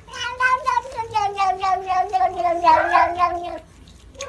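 Tabby cat giving one long, drawn-out yowling meow of about three and a half seconds. Its pitch sags slowly and wobbles rapidly throughout, and the call cuts off sharply near the end.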